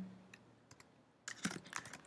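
Computer keyboard keystrokes: a few scattered key clicks, then a quick run of several about a second and a half in.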